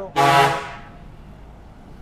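A vehicle horn gives one short, loud toot about half a second long, then only a low traffic rumble remains.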